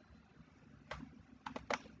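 A few faint, sharp clicks of computer input: one about a second in, then a quick run of three or four near the end.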